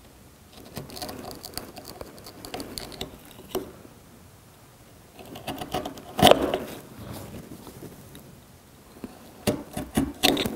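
Bench chisel pushed by hand into the hardwood wall of a through mortise, paring down along knife lines: bursts of short scraping, shaving strokes as the edge cuts wood fibres. A sharper crack about six seconds in is the loudest moment.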